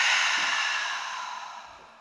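A woman's long, audible breath out through the open mouth, a deep exhale of a relaxation breathing exercise, fading away over about two seconds.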